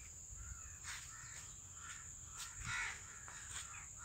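Outdoor birds calling in short separate calls, one louder call about three quarters of the way through, over a steady high-pitched insect drone.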